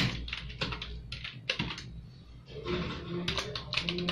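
Typing on an external desktop computer keyboard: quick, irregular key clicks, several a second, with a brief pause about two seconds in.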